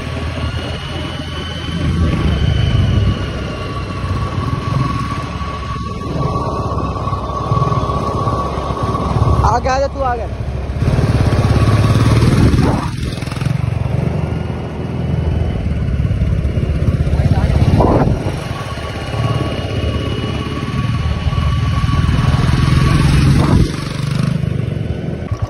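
Royal Enfield Bullet motorcycle's single-cylinder engine running as it is ridden, a steady low rumble.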